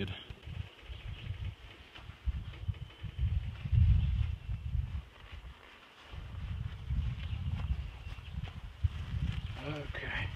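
Low rumbling noise on the microphone that comes and goes, with a lull about halfway through, over a faint steady high hum.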